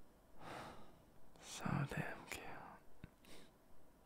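A man whispering softly in breathy, unintelligible phrases close to the microphone, with a small sharp click about three seconds in.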